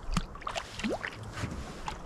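A hand dipping into lake water at the side of a boat: a few short splashes and knocks, with one brief rising squeak about a second in. Low wind rumble on the microphone runs underneath.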